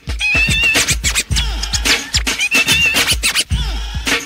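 Late-1980s hip-hop instrumental break: turntable scratching over a heavy drum beat, the scratched sounds sweeping up and down in pitch in quick strokes.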